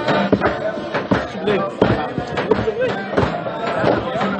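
A group of men singing together without words, a Hasidic niggun, with frequent sharp claps and knocks along the beat.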